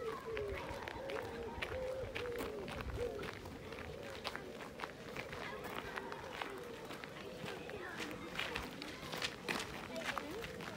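Footsteps crunching on a gravel path at walking pace, with indistinct voices of people talking in the background.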